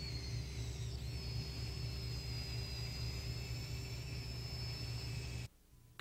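Small electric drive motors of the JPL Nano Rover whirring steadily, a thin high whine over a low hum. The sound cuts off suddenly about half a second before the end.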